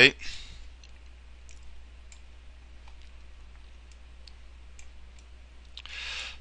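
Computer mouse clicking: about nine faint, single clicks at irregular intervals, over a steady low hum.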